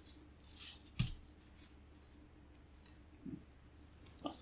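Faint handling sounds: a brief rattle of a seasoning shaker, then a single sharp knock about a second in, and a soft bump near the end.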